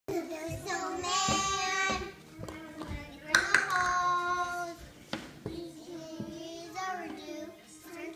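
A young child singing wordless, drawn-out notes, with a few sharp claps in between.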